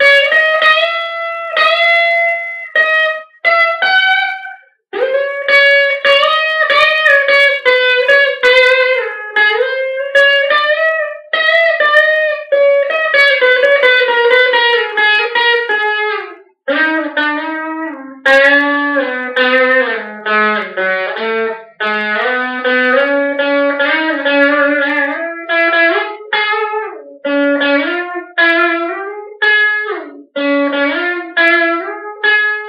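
Stratocaster-style electric guitar playing a single-note lead melody with string bends. The melody sits high in the first half and drops to a lower register just past halfway, with brief pauses between phrases.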